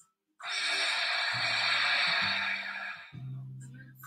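A long, breathy exhale lasting about two and a half seconds while the pose is held. Low steady tones sound underneath from about a second in.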